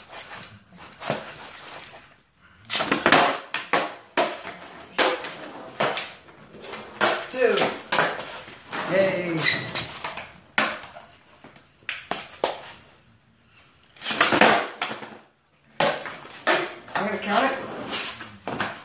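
Skateboard on a concrete garage floor: repeated sharp pops and clacks as the board is snapped up and lands, with wheel rolling between, during pop shove-it attempts. A person's voice comes in now and then.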